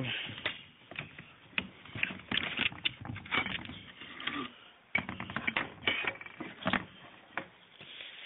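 Irregular metallic clicks and scrapes of a Saiga (AK-pattern) rifle's recoil spring assembly being unlatched and pulled out of the receiver.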